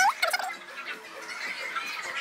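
A short, high vocal sound with a quickly rising pitch right at the start, followed by a low murmur of other people's voices.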